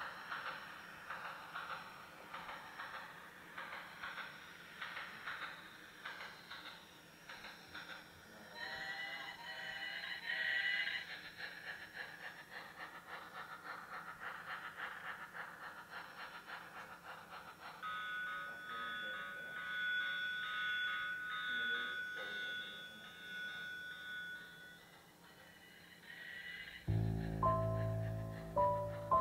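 A small battery-powered toy train clicks steadily along its plastic track, about three strokes a second, under quiet background music. Later only soft held music remains, and a louder tinkling melody begins near the end.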